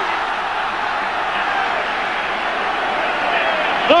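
Stadium crowd cheering a goal, a steady roar of many voices.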